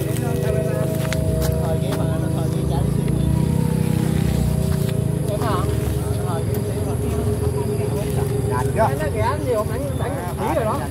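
Vietnamese kite flutes (sáo diều) droning from kites flying overhead: several steady tones at once, held throughout, over a low rumble that eases off about five seconds in. Brief voices are heard near the end.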